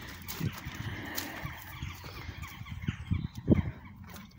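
Faint bird calls, with a few low thumps about half a second in, a second in and near the end.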